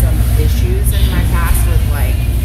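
A woman talking in conversation, over a steady low rumble.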